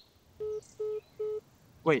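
Three short, identical phone beeps, evenly spaced a little under half a second apart: the call-ended tone of a mobile phone call that has just been hung up on.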